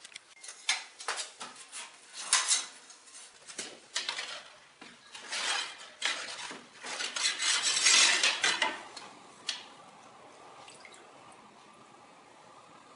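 Ceramic tiles clinking and scraping against one another as they are handled and lifted out of a stack in a tub: a run of sharp clacks, busiest in the middle, then dying away to quiet near the end.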